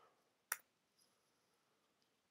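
A single sharp keyboard keystroke about half a second in, otherwise near silence.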